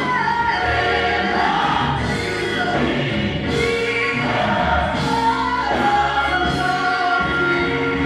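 Female gospel soloist singing into a microphone, backed by a choir and instrumental accompaniment, in a sliding, melismatic melody over sustained chords.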